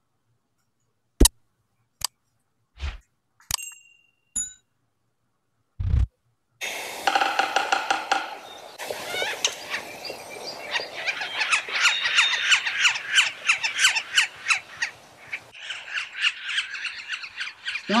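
A few scattered clicks and a thump, then from about seven seconds in a recording of yellow-bellied sapsucker calls, a dense run of calls repeated in quick succession, played back through a computer over a video call.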